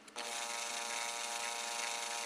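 A small electric motor whirring steadily as it spins the fly-tying mandrel, winding a wire rib onto a stonefly nymph's dubbed extended abdomen. The whir starts a moment in.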